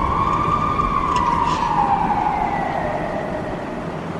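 A siren wailing: one slow tone that rises and then falls away, over a low rumbling noise, getting slightly quieter toward the end.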